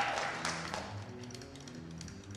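A high school chorus's sung phrase ending and fading away in the hall's reverberation, with soft sustained accompaniment held underneath and a few light taps.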